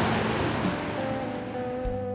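Ocean surf as a steady rush, thinning out in the second half as held musical notes swell up underneath.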